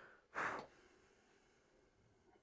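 A single short breath, a quick sigh-like rush of air through the nose, about half a second in; the rest is faint.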